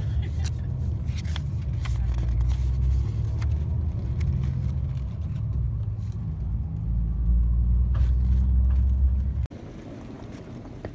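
Bus engine and road drone heard from inside the passenger cabin: a steady low hum that grows louder about seven seconds in and cuts off suddenly near the end, with light ticks and rustles of paper being handled.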